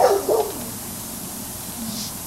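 A short, high, dog-like yelp at the very start, falling in pitch in two quick parts and lasting about half a second.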